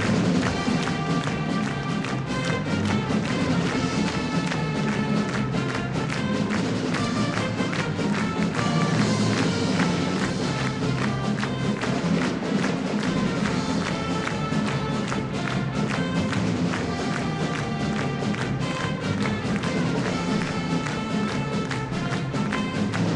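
School pep band playing an upbeat tune: brass over a steady drum beat.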